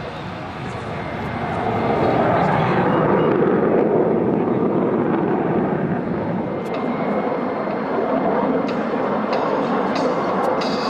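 Jet noise from the twin Klimov RD-33 turbofans of two MiG-29AS fighters climbing at high power, their engines trailing smoke. It is a broad, rushing sound that swells about a second and a half in and then holds steady.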